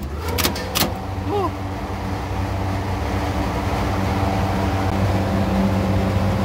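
Three-phase refrigeration compressor of a 1978 R22 chiller running with a steady low hum that grows slowly louder, after a few sharp clicks in the first second. It is drawing about 7 amps, below its 11-amp cut-out.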